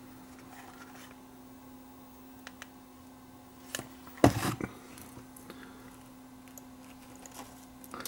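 Quiet room tone with a faint steady low hum, broken by a few light clicks and one brief rustling noise about four seconds in as a small circuit board with its wires is handled.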